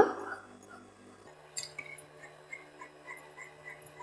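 Tailoring scissors snipping through silk blouse fabric, faint, with a sharp click about a second and a half in. Short faint high squeaks recur over a steady low hum.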